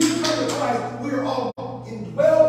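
A man preaching, his voice carried over a steady low hum, with a brief cut-out in the audio about one and a half seconds in.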